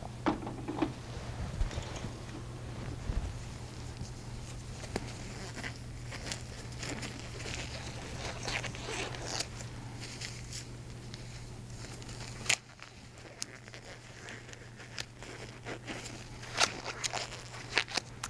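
Nitrile exam gloves being pulled on and adjusted: light rustling and small snaps of the gloves on the hands, over a steady low room hum that cuts out about two-thirds of the way through.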